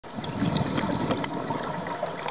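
Underwater sound recorded on a scuba dive: a low, continuous bubbling burble, typical of a diver's exhaled air bubbles from the regulator, with scattered faint clicks.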